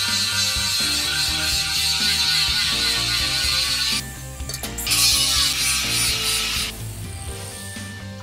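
Angle grinder with an abrasive disc grinding down weld beads on a steel-tube frame, in two passes: a long one of about four seconds, then a shorter one of about two seconds after a brief break. Background music plays throughout.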